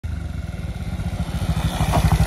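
Single-cylinder Bajaj Pulsar NS motorcycle engine running, with a steady, even train of exhaust pulses that slowly grows louder.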